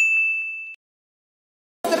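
A single bright, bell-like "ding" sound effect: one strike that rings on a steady high note for under a second, then cuts off suddenly into silence.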